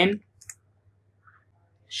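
A couple of faint computer keyboard keystroke clicks, the sharpest about half a second in, between spoken words.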